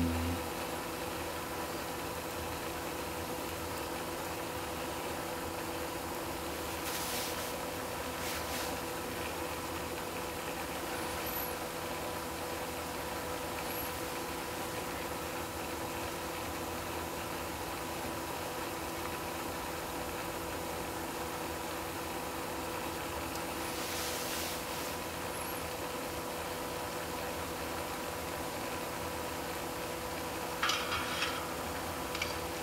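Steady low hum with a few faint steady tones in it, and a few faint clicks about a third of the way in and again near three quarters.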